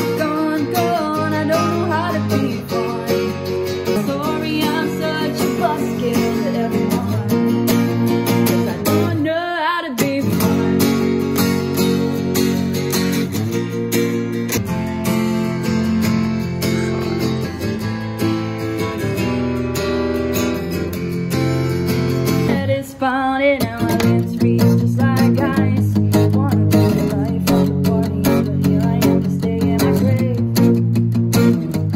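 Steel-string acoustic guitar played with chords and picked notes, with a woman singing over it; a held, wavering sung note stands out about a third of the way in and again about three quarters through.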